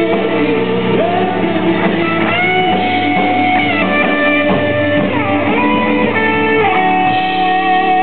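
Live pop-rock song: a male voice singing long, gliding notes over guitar chords. About seven seconds in the low bass drops out and a held chord rings on as the song nears its end.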